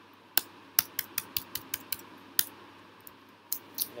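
Computer keyboard keystrokes: a run of about nine sharp clicks, unevenly spaced, in the first half, then two more near the end, as code is typed and edited.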